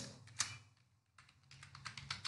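Typing on a computer keyboard: one keystroke, a short pause, then a quick run of keystrokes through the second half.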